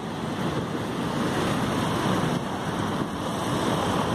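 Wind buffeting the microphone of a moving camera: a steady, rough, low rumble with no distinct events.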